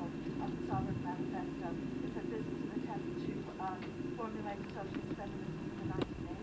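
Indistinct speech that cannot be made out, over a steady low hum from the recording.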